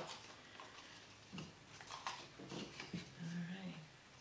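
Soft rustling and crinkling of a newspaper strip being handled and dipped into paper mache paste, with a few faint clicks about two seconds in. A quiet wordless murmur and a short held hum near the end.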